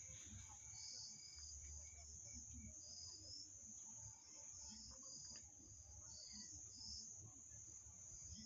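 Near silence: faint background with a steady high-pitched whine and scattered soft high chirps.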